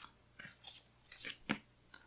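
Faint paper handling: a few short crinkles and taps as a sheet of sticker backing paper is slid aside and a hand smooths a sticker onto the planner page.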